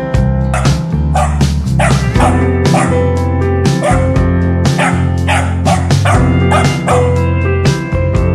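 Background music with a steady beat, with a young corgi yipping and barking over it.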